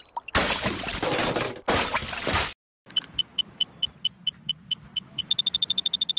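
Cartoon sound effect of things crashing and shattering for about two and a half seconds. After a brief silence comes a run of short high-pitched beeps, about four or five a second, which speed up to a rapid burst near the end.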